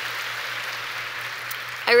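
Audience applauding steadily, a dense even patter, until a woman starts speaking near the end.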